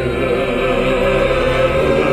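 Gospel song: several voices singing together in long held chords.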